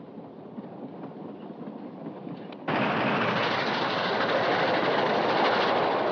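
Passenger train running on the rails, heard inside a sleeping car: a steady rumbling noise that jumps abruptly louder about two and a half seconds in.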